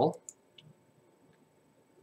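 A few faint clicks from computer input as an Excel file is saved, spread over the first second or so.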